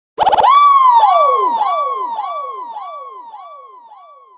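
Electronic DJ siren sound effect: a quick stutter, then a falling zap repeated by an echo about twice a second, each repeat quieter until it has nearly died away.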